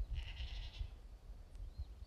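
A single short, high-pitched, bleat-like animal call, lasting under a second near the start, over a low steady rumble; two faint chirps come at the start and near the end.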